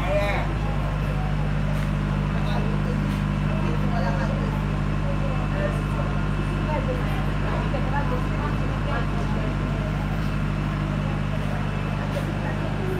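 A steady low mechanical hum, like an engine running, under the indistinct chatter of people talking.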